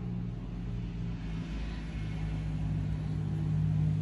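A steady low mechanical hum with a low rumble under it, like a motor running.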